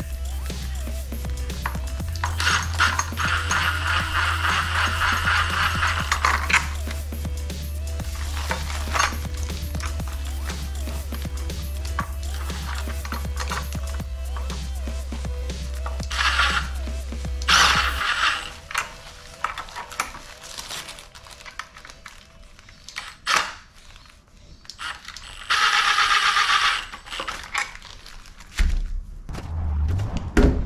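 Background music, over which a cordless drill-driver runs in bursts as it drives the small bolts of a fly screen: one run of about four seconds a couple of seconds in, two short runs past the middle, and another near the end.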